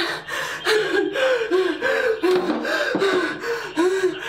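A woman gasping and whimpering in fright, a quick run of short voiced cries about three a second.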